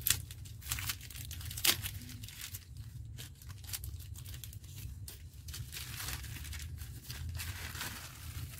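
Thin black plastic polybag crinkling and tearing in irregular crackles as it is worked off a plant's root ball, with a few sharper snaps near the start.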